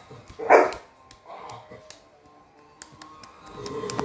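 A dog barks once loudly about half a second in, with a softer bark about a second later, over music from a television.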